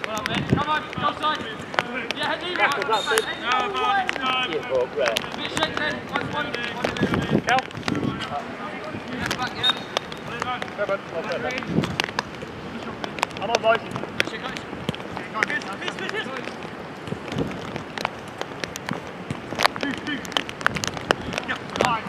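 Five-a-side football on artificial turf: players shouting and calling to each other across the pitch. Running footsteps and scattered sharp knocks of the ball being kicked come throughout.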